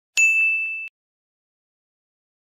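Notification-bell 'ding' sound effect: a single bright chime that rings for under a second and then cuts off abruptly.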